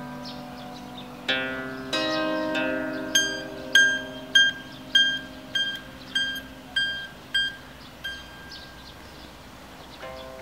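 Bandura played solo: two strummed chords, then one high note plucked over and over, about nine times at an even pace, fading away towards the end.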